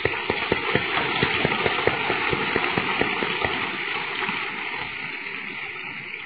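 Audience applauding, a dense patter of many hands clapping that swells at once and then slowly dies away.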